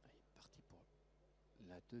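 Near silence: a faint steady hum with a few soft clicks, then a man starts talking near the end.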